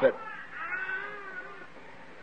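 A faint, drawn-out cry in the background, about a second long, rising slightly and then falling in pitch.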